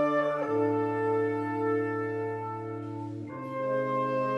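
Concert wind band holding slow sustained chords with brass to the fore, moving to a new chord about half a second in and again just after three seconds.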